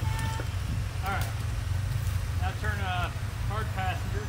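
Jeep Rubicon's engine running at low revs with a steady low rumble as it crawls over rock ledges, with people's voices talking briefly over it.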